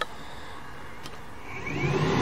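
A toggle switch clicks, then a camper roof vent fan motor spins up about a second and a half in, with a short rising whine that settles into a steady run.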